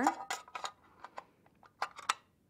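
Light clicks and taps of a 2.5-inch laptop hard drive and its connector board being slid and fitted into a metal drive enclosure: about half a dozen small knocks spread across two seconds.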